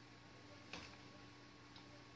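Near silence: room tone with a faint steady hum and two faint clicks about a second apart.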